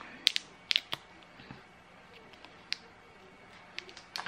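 A few faint, sharp crinkles and clicks of candy-bar wrappers being handled, three close together in the first second and one or two more later, over quiet room tone.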